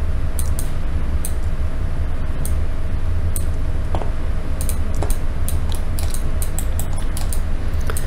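Irregular clicks of a computer mouse and keyboard while operating 3D software, coming in a quicker run near the end, over a steady low hum.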